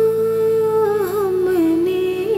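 A woman singing the slow melody of a Hindi ghazal without words, holding one long note and then turning through quick ornaments about a second in, over a soft, steady instrumental accompaniment.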